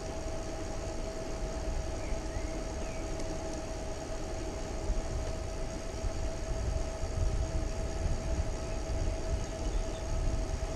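A home-built e-bike's 350 W rear hub motor whining at a steady pitch while cruising at about 36 km/h, over a low rumble of wind and tyres on asphalt that grows a little louder in the second half.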